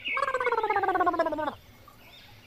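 A high warbling tone, rapidly pulsing and sliding slowly down in pitch, lasting about a second and a half before cutting off; it sounds like an edited-in cartoon-style sound effect over a transition.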